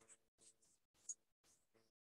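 Near silence: faint room noise that cuts in and out several times a second.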